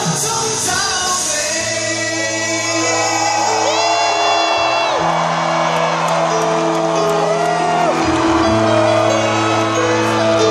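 Live Cantopop ballad heard from among a large concert audience: a band plays under long, held sung notes as the song draws to its close, and the crowd whoops.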